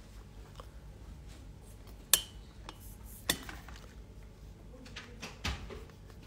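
Light clicks and taps from fingers and long nails handling a plastic nail tip on its stand, the sharpest about two seconds in and another about a second later, over a low steady hum.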